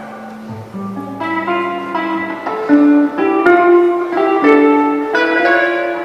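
Electric guitar played solo through an amplifier: a low note about half a second in, then a run of picked single notes from about a second in that ring on over one another.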